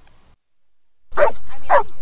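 Dog barking twice, about half a second apart, starting about a second in after a brief silence.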